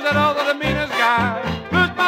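Traditional jazz band with clarinet, trumpet, trombone, banjo, tuba and drums playing a swinging tune, with steady bass notes on the beat under a wavering lead line.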